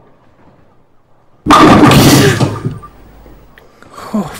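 A bowling ball crashing into the pins, a loud sudden clatter about a second and a half in that dies away over about a second.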